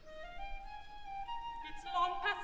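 Orchestra playing a soft instrumental passage between sung phrases: a melodic line of held notes climbing step by step, quieter than the singing around it.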